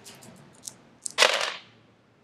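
Plastic six-sided dice rattled in a hand with a few light clicks, then thrown onto the gaming board, clattering loudest just over a second in as they land and tumble.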